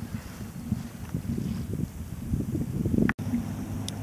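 Wind buffeting the microphone over water sloshing around a kayak on choppy open water: an uneven low rumble that rises and falls in gusts. It cuts out for an instant about three seconds in.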